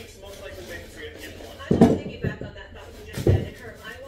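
Two heavy knocks on wooden stair steps during staple-pulling work, the second one the louder, about a second and a half apart, over steady background talk.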